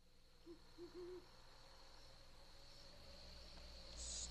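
Faint owl hooting: a single short hoot, then a quick double hoot within the first second and a half, over a low hum that grows slightly louder near the end.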